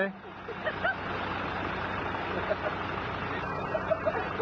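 Off-road vehicle engine running steadily at low revs, with a short laugh about a second in.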